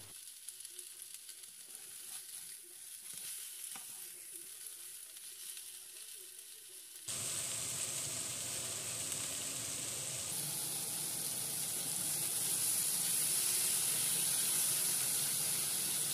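Flour-dusted beef cubes sizzling in hot oil in a frying pan as they brown. The sizzle is faint at first and steps up suddenly about seven seconds in to a louder, steady hiss.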